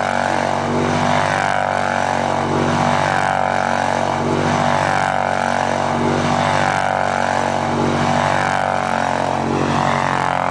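ATV engine running steadily as the quad spins tight circles on ice. Its pitch swells and dips in a regular cycle, about once every second and a half to two seconds, in step with each lap.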